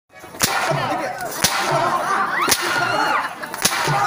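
Four sharp cracking blows about a second apart, one performer striking another in a staged comic beating, with voices between the strikes.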